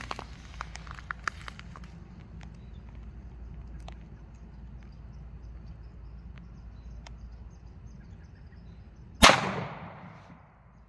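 A single 9mm pistol shot from a Glock 17 firing a +P 115-grain round, about nine seconds in, with a short echo trailing off after the report.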